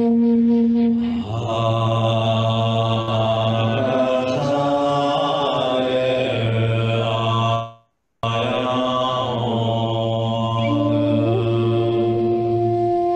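A man's voice chanting a mantra in long, steady held notes. The chant drops from a higher held tone to a lower one about a second in. The sound cuts out completely for about half a second a little past the middle.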